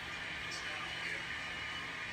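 Steady background noise with a faint low hum, and no distinct sound event.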